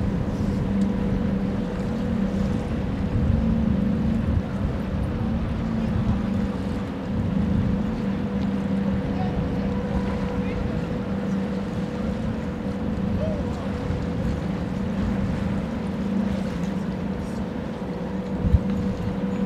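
Steady low machinery drone of the cruise ship Allure of the Seas manoeuvring off the quay, with a constant hum running through it and wind buffeting the microphone.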